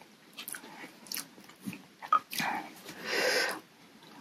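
Close-miked eating sounds from a person eating hot noodle soup with wooden utensils: small clicks and wet mouth noises, a sharp click about halfway through, and a longer breathy burst near the end.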